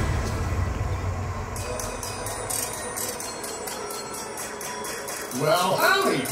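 Parade soundtrack between songs: after a low rumble fades, a quiet, even shaker-like beat of about three to four ticks a second starts about a second and a half in. Near the end a voice with a gliding pitch comes in over it.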